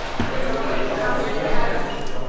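Indistinct murmur of several voices in a busy room, with no one speaking clearly.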